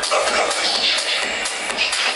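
Loud electronic dance music from a DJ set played over a club sound system, with a steady kick-drum beat. A bright hiss swells over it for about a second midway.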